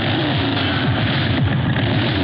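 Motorcycle engine being revved hard, loud and continuous, its pitch falling back again and again between revs.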